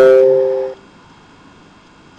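A single loud ringing chime with several overtones, fading and then cutting off abruptly under a second in, typical of a computer chat notification sound; faint hiss follows.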